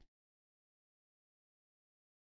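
Near silence: the sound drops out entirely, right after the last spoken word ends at the very start.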